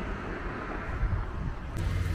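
Steady low rumble of distant road traffic, with a brighter hiss coming in just before the end.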